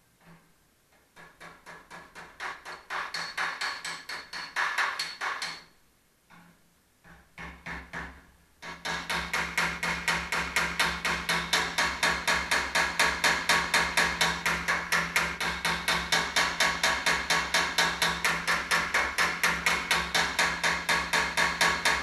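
Light, quick hammer blows on the steel sheet metal of a Triumph TR250's front body panel, with a steel hammer working it against a dolly to ease a dent back into shape. The taps run evenly at about four a second: a short run, a brief pause, then a long unbroken run.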